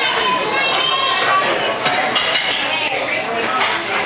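Busy restaurant dining-room chatter with dishes and cutlery clinking, and a toddler's high-pitched voice in the first second or so.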